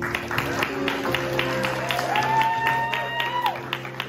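Congregation clapping over soft, sustained keyboard music. A single voice calls out briefly in the middle.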